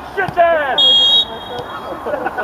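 Referee's whistle: one short, steady, high blast of about half a second, about a second in, stopping play. Voices call out just before it.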